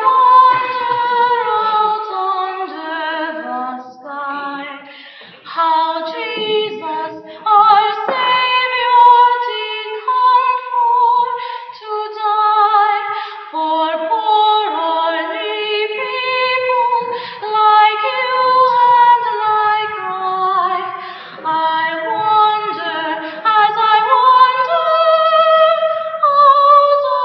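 Children's choir singing a piece in live concert, with held notes moving from pitch to pitch. The sound has the dulled top end of an old cassette tape recording.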